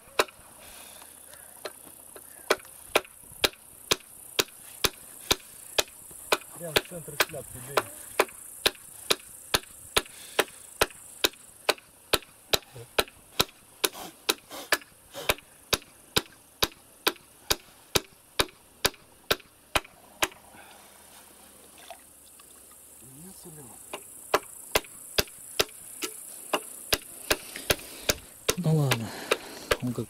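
Steel hammer driving nails into a birch pole, sharp blows at about two a second with a short pause about two-thirds of the way through. Men's voices come in briefly near the end.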